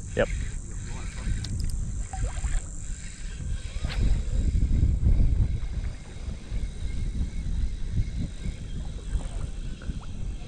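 Wind buffeting the microphone in gusts, a low rumble that swells loudest about four to five seconds in.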